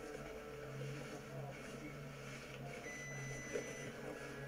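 Quiet, steady low hum of an idling car engine, with a faint thin high tone for about a second near the end.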